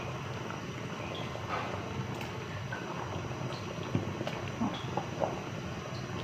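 Pork hock and vegetable soup bubbling steadily in a stainless steel pot, still boiling on the stove's leftover heat after the burner has been switched off, with a few light clicks of a ladle in the pot.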